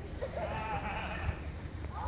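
A drawn-out call that wavers up and down in pitch for about a second and a half, over a steady low rumble of wind on the microphone.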